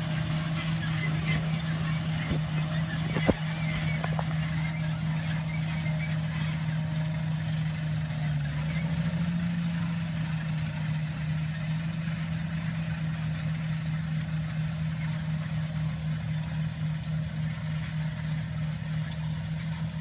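John Deere tractor's diesel engine running steadily under load as it pulls a multi-row cotton planter, a steady drone that rises slightly in pitch about nine seconds in. A single sharp click comes about three seconds in.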